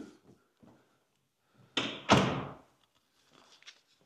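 An interior door shutting with a single loud thud about two seconds in, a lighter knock just before it as the door meets the frame.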